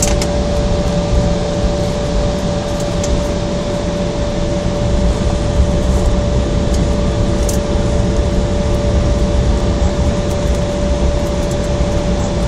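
Cabin noise inside an Embraer 170 jet rolling along the ground after landing: the steady rumble of its engines and air-conditioning, with one constant tone and a few faint ticks.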